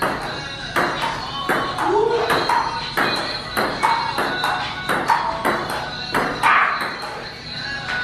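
Table tennis ball clicking back and forth off the paddles and the table during a rally, about one to two hits a second, over background music.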